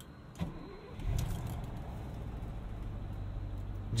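The 1973 Mercedes-Benz 450SEL's fuel-injected 4.5-litre V8 is started with the key. It jumps right to life about a second in and settles into a steady idle, heard from inside the cabin.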